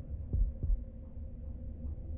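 Heartbeat sound effect: one low double thump, two beats about a third of a second apart a little under half a second in, over a low rumbling drone with a faint steady hum.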